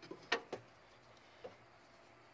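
A few short light clicks from a belt's metal buckle and strap being worked around a spin-on oil filter, the belt cinched tight to serve as a makeshift filter wrench.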